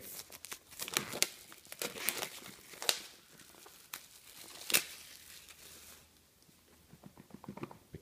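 Clear plastic shrink-wrap being peeled off a smartphone box by hand: a run of sharp crinkles and crackles that thins out about six seconds in.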